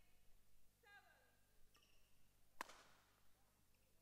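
Faint sounds of a badminton rally in a large hall: shoes squeak briefly on the court floor twice in the first second or so. A single sharp hit of racket on shuttlecock comes about two and a half seconds in.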